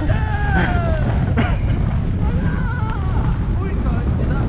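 Steady low wind rumble buffeting the camera microphone as a kite buggy runs at speed across firm beach sand, with a voice calling out and laughing over it in the first second and again briefly later.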